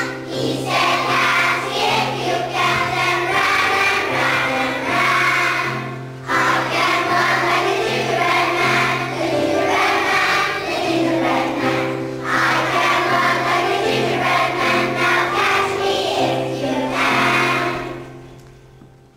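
Children's choir singing a song with steady instrumental accompaniment, in phrases with short breaks about 6 and 12 seconds in.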